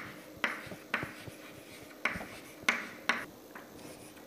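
Chalk writing on a chalkboard: a handful of short, sharp scratching strokes and taps with pauses between them.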